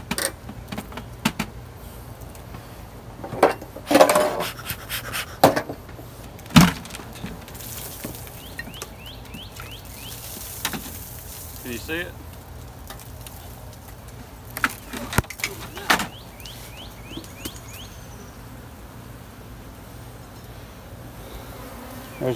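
A soffit board being pried loose from the eaves with a flat metal hive tool: a series of sharp cracks, knocks and scrapes of board and metal trim, loudest in a cluster about four to seven seconds in and again around fifteen seconds.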